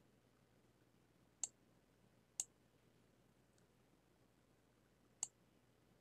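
Computer mouse clicking: three sharp single clicks, the first about a second and a half in, the next a second later, the last near the end, with a faint fourth between them, over near silence.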